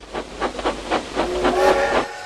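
Steam locomotive sound effect: rapid exhaust chuffs, about six a second, then a whistle of several tones sounding together from a little over a second in, the loudest part.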